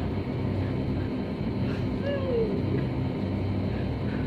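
Steady low hum, with one brief faint falling cry about two seconds in.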